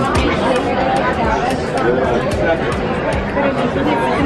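Many voices talking at once in a busy restaurant dining room: a steady babble of diners' conversation.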